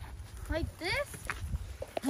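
Short, high-pitched vocal calls that rise in pitch, over a low steady rumble.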